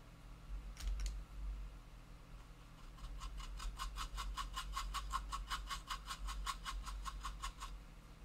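Small paintbrush scrubbing dry pigment into the plastic surface of a scale model: a quick even run of short brushing strokes, about six a second, from about three seconds in, after two light clicks about a second in.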